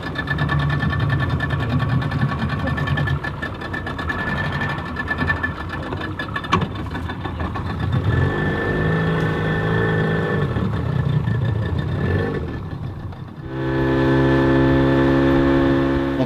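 Outboard motor on a small open boat running, its pitch rising and falling as the throttle changes. Near the end it settles into a steady, louder drone.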